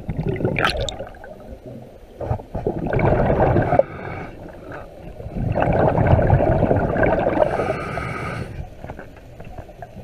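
Scuba diver breathing through a regulator underwater: long rumbling bursts of exhaled bubbles, and near the end a hissing inhale through the regulator with a faint whistle in it.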